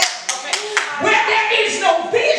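Hands clapping four times in quick succession, about four claps a second, followed by a woman's voice.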